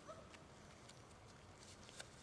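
Near silence: faint outdoor background with a couple of soft clicks.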